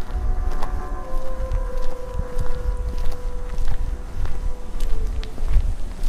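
Audio-drama outdoor ambience: low wind noise with irregular footsteps. A single held music note sounds through the first few seconds and fades out about five seconds in.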